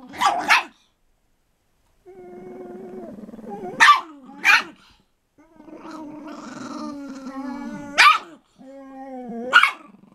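A Chihuahua and a pit bull growling at each other in play: long, pitched, rumbling growls that run on for a second or two at a time, broken by about six short, sharp barks.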